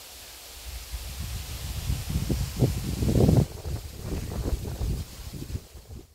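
Wind buffeting an outdoor microphone: an uneven low rumble that swells and falls in gusts, loudest about three seconds in.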